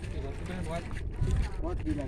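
Faint voices of people talking in the background over a steady low rumble of wind on the microphone.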